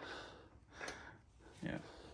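Mostly quiet, with a faint short breath about a second in and a man's brief 'yeah' near the end.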